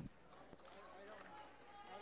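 Near silence: faint, distant talking over a low room hum.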